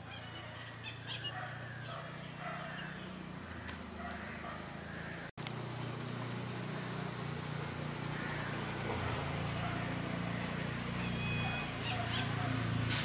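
Faint outdoor lane ambience: birds calling and distant voices, with a low engine hum as a motor scooter rides past, the hum growing louder in the second half.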